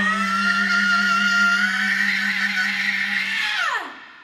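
A woman's belted, wailing sung note, sliding up into a long held high note, then dropping off sharply near the end. A steady low chord from the band sits under it and stops just before the voice falls away.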